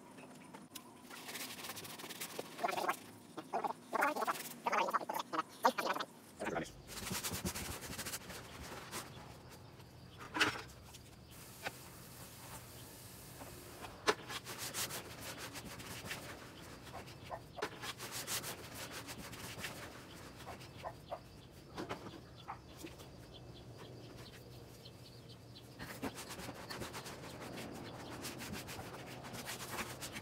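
Gloved hands mixing damp refractory mix of sand, perlite, cement and bentonite clay in a plastic mixing tub, with irregular scraping and gritty crunching as water is worked in to hydrate the clay.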